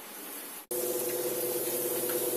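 Chebureki frying in hot vegetable oil in a pan: a steady sizzling hiss. It cuts out for an instant about two-thirds of a second in and comes back louder, with a low steady hum beneath it.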